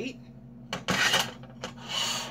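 A ceramic dinner plate scraping against the stovetop as it is slid and set down: two short rubbing rasps, one about a second in and another near the end.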